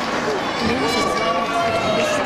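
Indistinct chatter of many overlapping voices in a large gymnasium.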